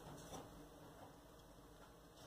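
Near silence, with a faint patter of granulated sugar poured into a hot pot of melting lard in the first half second.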